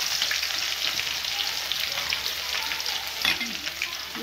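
Chopped garlic frying in hot oil in a kadai: a steady sizzle with fine crackling.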